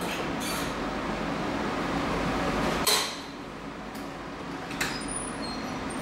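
Wire doors of plastic dog crates being unlatched and swung open, metal rattling and clinking, with one sharp clank about three seconds in.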